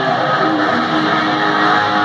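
Live hard rock band playing, led by electric guitar holding sustained notes over the full band, recorded from the audience.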